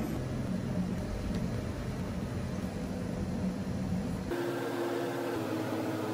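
Steady rushing hum of a commercial kitchen's extraction fan and equipment. About four seconds in, the low rumble drops away and a steady humming tone is left.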